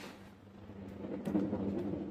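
Faint rustling and a few light clicks as a thin red-and-black power lead is picked up and handled on a cloth, starting about a second in, over a low steady hum.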